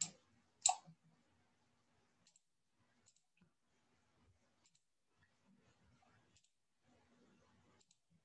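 Computer mouse clicks over near silence: one short, sharper click about two-thirds of a second in, then a few very faint, scattered clicks.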